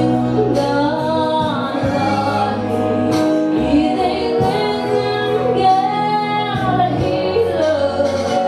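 A woman singing a gospel song into a microphone, her voice rising and falling in long held phrases over steady instrumental accompaniment with sustained bass notes.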